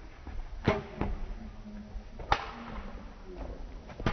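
Badminton racket striking a shuttlecock twice in a rally, two sharp cracks about a second and a half apart, each with a short echo in a large gym hall.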